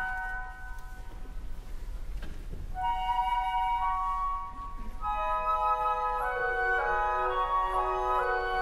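Orchestral flutes playing held, stepwise notes in a soft passage. After a brief lull they re-enter, and from about five seconds in more woodwinds join in layered chords.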